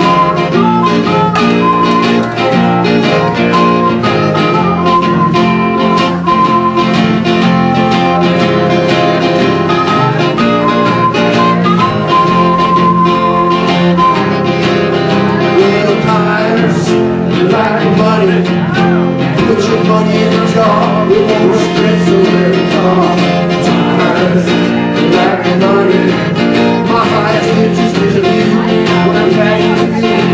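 Blues harmonica playing lead over a strummed acoustic guitar. In the first half the harp holds long steady notes; in the second half its notes bend and waver more.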